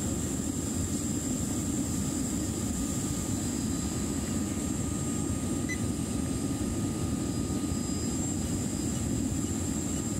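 Smelting furnace's burner running steadily: an even, deep rush of noise with faint steady whine tones above it, while the crucible charge is at heat.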